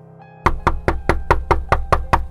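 Rapid knocking, about five sharp taps a second, starting about half a second in, over steady background music.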